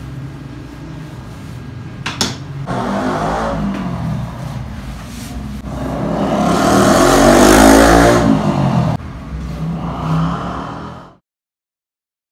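A motor vehicle engine revving, swelling to its loudest about seven to eight seconds in and then falling away, over a steady low hum, with one sharp click about two seconds in; the sound cuts off suddenly near the end.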